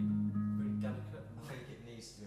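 Guitar playing low sustained notes that ring and then die away over the second half.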